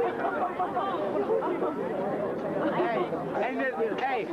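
Several people's voices talking over one another: overlapping chatter with no clear words.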